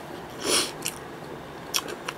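Close mouth sounds of chewing a bite of egg salad sandwich with cucumber and ham: a few short wet chewing noises, the loudest about half a second in.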